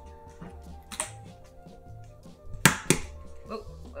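An egg being cracked: a light tap about a second in, then two sharp knocks in quick succession against a hard edge, and the shell gives way at once. Soft background music with held notes plays under it.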